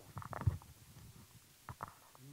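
Handling noise on a handheld microphone: a cluster of soft, muffled knocks and rustles about half a second in, and two more near the end.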